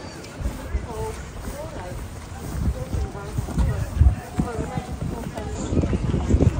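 Wind buffeting the microphone in uneven low rumbles, with voices in the background.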